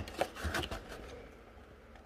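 Faint handling of a cardboard model-kit box as its lid is opened: a few soft knocks and rustles in the first second, fading almost to quiet.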